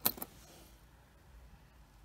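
Copper pennies clicking against each other as one coin is pulled from a stack: two quick metallic clicks right at the start, then only faint handling noise.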